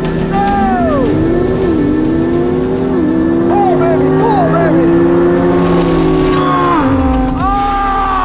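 Porsche 911 Turbo S's twin-turbo flat-six at full throttle down a drag strip, heard from inside the cabin: its pitch climbs through the gears and dips at each upshift. The engine note drops away about seven seconds in. Background music runs underneath.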